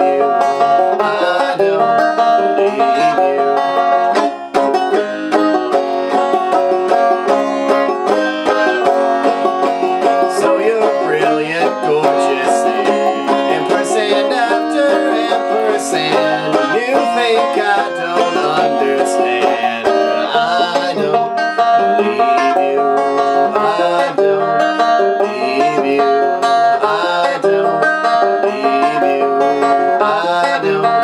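Five-string banjo in open G tuning lowered a half step (G flat, D flat, G flat, B flat, D flat), played steadily through a chord progression as an instrumental passage with no singing.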